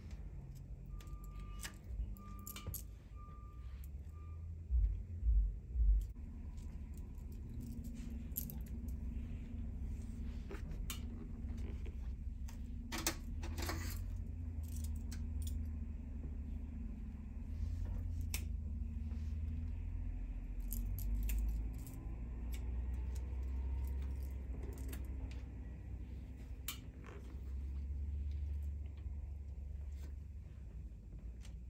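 Metal bracelets and bangles jangling and clicking on a hairstylist's wrists as her hands work hair wefts, in scattered small clicks with a busier flurry about halfway through, over low handling rumble. Four short beeps sound in the first few seconds, and a few dull thumps follow.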